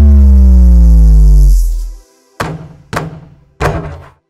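Cartoon sound effect: a loud tone glides steadily down in pitch for about two seconds as the basketball falls from the sky, then three short thuds follow.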